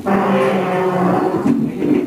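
A single long, loud call held at a near-steady pitch for about two seconds, starting abruptly.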